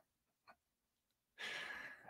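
Near silence, then about one and a half seconds in, a man's audible breath: a soft, airy hiss lasting about half a second.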